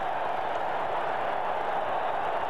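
Large stadium crowd cheering steadily, celebrating a try.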